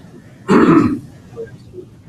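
A person clearing their throat once, a short burst about half a second in.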